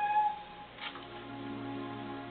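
A woman's classical soprano voice ends a held high note about a third of a second in; after a short hiss near the middle, a low steady accompaniment note sounds during a pause in the singing.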